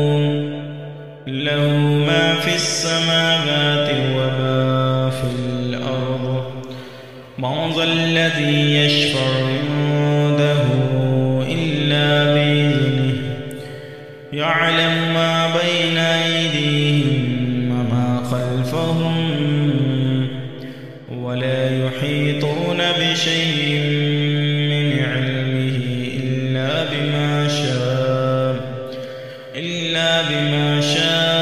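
A man reciting the Quran in Arabic in a slow, melodic style, holding long drawn-out notes. The phrases last about six or seven seconds, with a brief pause for breath between them.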